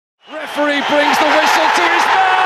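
A crowd of voices chanting loudly in unison on short held notes over a haze of crowd noise, starting abruptly just after the opening.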